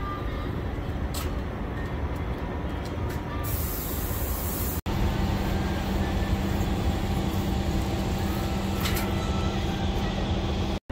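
Steady low rumble of a heavy diesel truck idling, with short hisses of spray and a longer hiss a little before the midpoint; after a cut about five seconds in, a steady hum joins the rumble.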